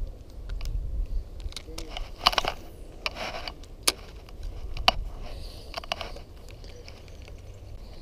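Spinning reel being cranked in a few short rattling bursts, with scattered clicks from handling the rod and reel as a fish is brought in, over a steady rumble of wind on the microphone.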